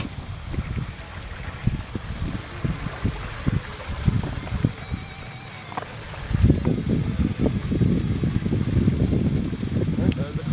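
Wind buffeting the camera microphone in low, gusty rumbles that grow stronger about six seconds in, with a few light knocks from handling in the boat.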